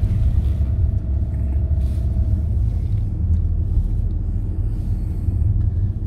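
Low, steady rumble of engine and road noise inside a moving car's cabin as it drives slowly on a wet town street.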